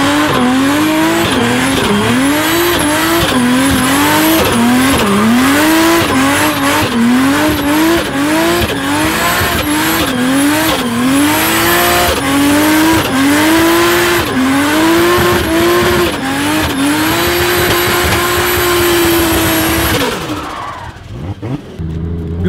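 Toyota Supra drift car doing smoky donuts: the engine revs up and down about once a second over continuous tyre squeal. Near the end it holds steady high revs for several seconds, then cuts off suddenly.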